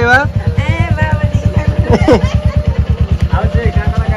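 Motorcycle engine idling with a fast, even thump, and excited voices over it.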